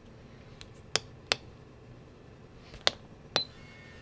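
A series of sharp, separate clicks, about five over a few seconds, as the DIY solar generator is switched on. The last click is followed by a brief high ring.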